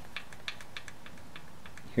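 A series of faint, light ticks from a Honda Sabre V4's valve rocker arm being rocked by hand against the valve stem: the small free play of a freshly set valve clearance of six thousandths, as wanted.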